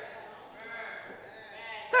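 Faint, wavering voices in the church, well below the preacher's level, as from the congregation responding.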